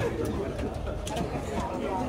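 Many people talking at once in a cinema auditorium: a steady chatter of overlapping voices, none standing out.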